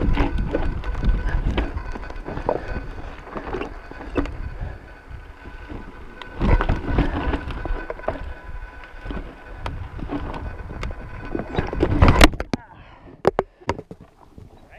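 Mountain bike rolling down sandstone slickrock: tyre rumble with wind on the chest-mounted camera's microphone and frequent clicks and rattles from the bike. A loud knock about twelve seconds in, then the riding noise stops and only a few clicks remain.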